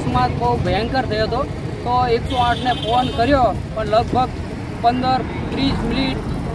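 A man talking over the steady low rumble of roadside traffic.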